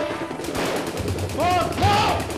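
Rapid automatic gunfire, film sound effects: a dense run of shots in quick succession, with pitched rising-and-falling sounds near the end.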